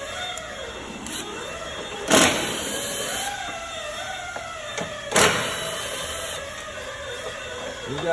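Two sharp clunks about three seconds apart, from tools and parts being handled in a car's engine bay around the battery box, over a faint wavering background hum.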